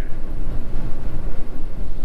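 Strong gusting wind buffeting a small molded-fiberglass Scamp travel trailer, heard from inside as a loud, steady low rumble as the wind rocks the trailer.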